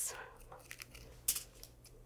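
A few faint scrapes and light ticks from a knife scraping the seeds and ribs out of a halved poblano pepper.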